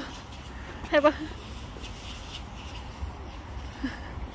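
A short spoken phrase about a second in, over a steady low outdoor rumble; no other distinct sound stands out.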